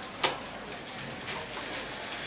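A single short knock about a quarter of a second in, from the handheld microphone being handled as the presenter bends over. After it comes low background noise with a bird calling faintly.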